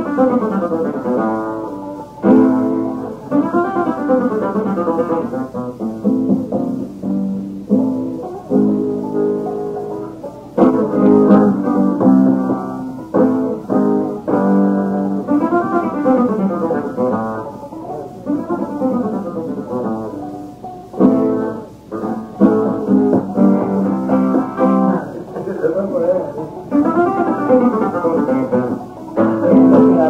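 Solo flamenco guitar playing bulerías, with quick picked runs broken by sharp, loud strums.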